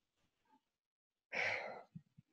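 A man's short breathy exhale, a sigh, about a second and a half in, after a pause with little else to hear.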